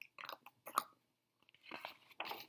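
Paper page of a hardcover picture book being grasped and turned: a few short, faint crinkles, then a longer rustle near the end as the page swings over.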